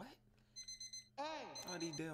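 Electronic beeping like a digital alarm clock: a short run of rapid, high beeps about half a second in, starting again near the end under a man's voice.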